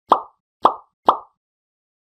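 Three short pop sound effects, about half a second apart, each dying away quickly: the end-screen animation's cue for the like, comment and share buttons popping into view.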